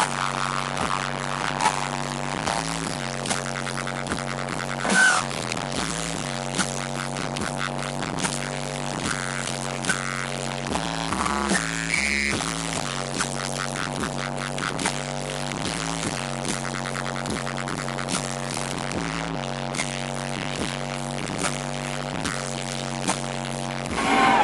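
Electronic dance music from a live DJ set played over a large sound system, carried by a steady repeating bass line and beat. A few short, brighter accents rise out of it along the way.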